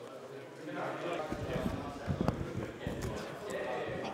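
Indistinct voices in the background, with a run of irregular low thuds from about a second in until near the end and one sharper knock in the middle.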